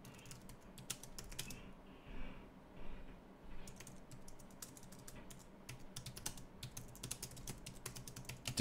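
Faint typing on a computer keyboard: a few key clicks, a pause of about two seconds, then a steady run of quick keystrokes through the rest.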